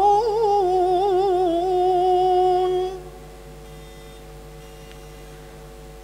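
A woman's voice in melodic Quranic recitation (tarannum), holding one long ornamented note whose pitch wavers and then settles before ending about three seconds in. After it, only faint room hum remains.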